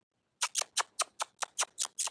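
Footsteps crunching on gravel, a quick even run of short crunches, about five a second.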